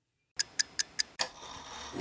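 A clock ticking: five quick, sharp ticks about a fifth of a second apart, starting after a brief silence and followed by a faint hum. Music comes in right at the end.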